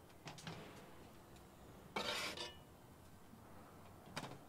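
A cast iron skillet scraping as it is slid into a wood-fired pizza oven: a short metallic rasp about halfway through, with a few faint clicks before it.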